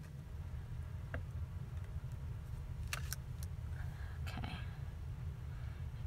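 A few light clicks and taps of small craft pieces being handled, over a steady low hum.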